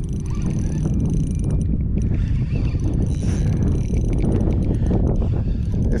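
Wind buffeting the microphone: a steady, loud low rumble with no clear pitch.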